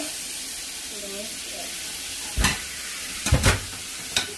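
Kitchen tap running steadily, water splashing over ears of corn in a metal colander in the sink. A few sharp knocks, the loudest sounds, come about two and a half and three and a half seconds in.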